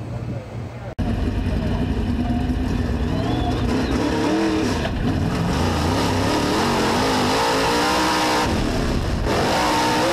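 Race car engine at speed, heard from inside the car, its pitch rising and falling as it revs. It cuts in suddenly about a second in.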